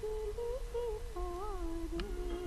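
A slow, wordless melody hummed by a single voice, one held note after another with a gentle waver in pitch, as part of the background tribute music.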